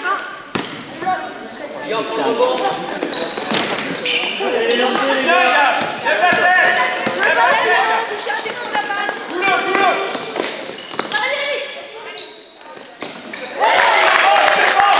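Basketball bouncing on a sports-hall floor during a youth game, with players and bench voices calling out over it, in the echo of a large gymnasium.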